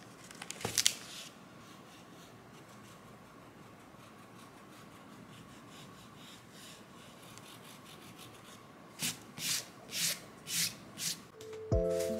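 An eraser rubbing back and forth on cardboard in about six quick strokes near the end, after a brief rustle and clicks of the cardboard being handled about a second in. Soft music comes in just at the end.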